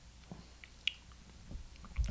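Faint mouth and lip sounds of someone tasting a sip of beer: small wet clicks, one sharper about a second in.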